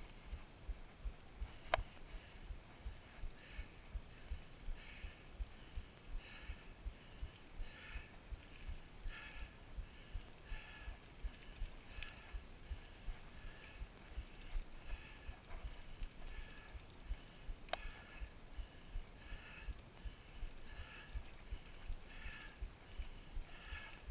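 Mountain bike rolling over a rough gravel dirt road, heard from a camera on the handlebars: a steady run of low thumps from the bumpy surface, with a softer puff repeating about every three-quarters of a second. Two sharp clicks come through, one near the start and one about three-quarters of the way in.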